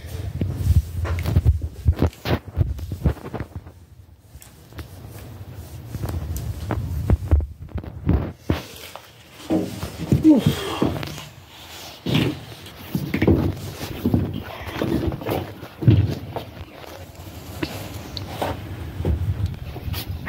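Irregular low thumps and rubbing from a handheld phone being moved about while it records, its microphone picking up the handling.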